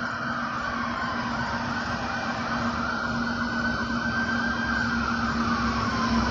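Police siren in slow wail mode, its pitch sinking, climbing back, holding and sinking again over several seconds, over a steady low hum.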